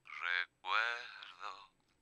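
A sung vocal track played back through a telephone-effect EQ, with both the low and the high frequencies cut away so the voice sounds as if heard over a telephone. Two sung phrases, the second held longer.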